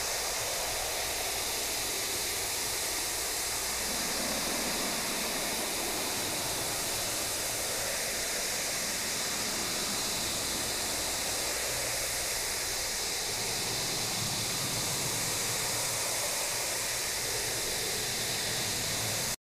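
Steady rush of automatic car-wash water spray beating on the car's windscreen and body, heard from inside the car.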